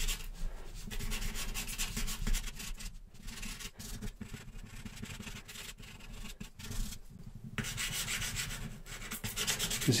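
A charcoal pencil scratching across toned paper in quick, short, repeated strokes, pressed firmly to lay in darker marks. The strokes briefly pause about three seconds in and again about seven seconds in.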